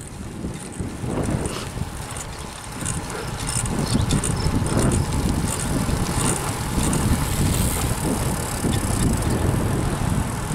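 Riding noise from a moving bicycle: wind rushing over the microphone and tyres rolling on asphalt, growing louder about four seconds in.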